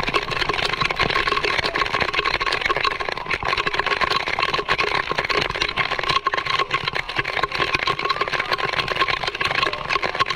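Heavy rain pelting down, drops striking close to the microphone in a dense, steady crackle over the wash of surf.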